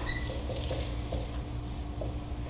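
Dry-erase marker squeaking and scratching on a whiteboard as letters are written, with a short high squeak right at the start followed by fainter scratchy strokes.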